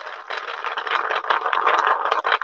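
Freshly painted beads rattling and rolling in a paper bowl as it is shaken by hand, a steady rattle that grows a little louder near the end. They are shaken so the wet paint doesn't dry them onto the bowl.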